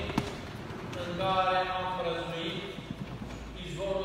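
A man speaking in short phrases, with one sharp knock just after the start.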